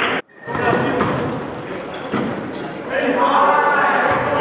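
Basketball game sounds on an indoor court: a basketball bouncing amid players' voices, with an abrupt cut near the start.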